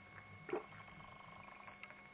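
Quiet room with a faint steady electrical hum, and one soft swallow about half a second in as a mouthful of beer goes down.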